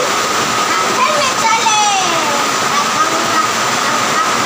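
Children's high voices calling out in short, wavering bursts over a steady, loud rushing noise with a thin constant high tone running through it.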